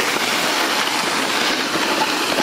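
Snowboard sliding and carving over packed snow at speed, a steady rushing scrape mixed with wind buffeting the microphone.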